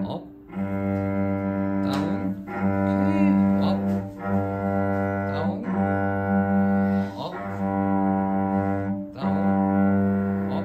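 A cello holding one low note, played in slow, long bow strokes that change direction about every one and a half to two seconds. Each stroke holds the same steady pitch, with a brief dip at each bow change. These are whole-bow strokes done as a right-wrist relaxation exercise.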